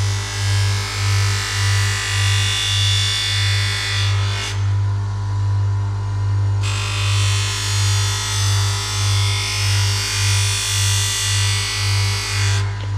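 Bench grinder with a flap disc running with a steady hum that pulses about twice a second, while a long butcher's knife blade is ground lightly against the disc. The grinding hiss breaks off for about two seconds in the middle, then resumes.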